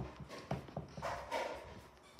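Footsteps going down carpeted stairs, a soft thud for each step, about five steps in quick, uneven succession.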